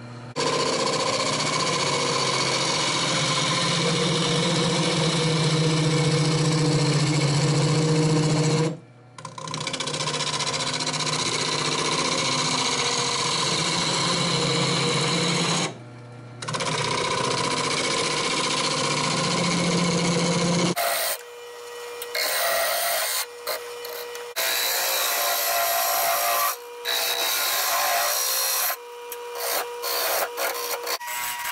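A bowl gouge cutting a spinning blank of green, freshly dug sassafras root on a wood lathe: a continuous loud rough cutting noise as wet shavings come off, broken briefly twice. From about two-thirds of the way in, the lathe's steady hum comes through under shorter, stop-start cuts.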